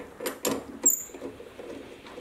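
A few light clicks and knocks of a steel part being handled in a metal lathe's four-jaw chuck as it is taken out. The loudest knock, a little under a second in, is followed by a brief high metallic ping.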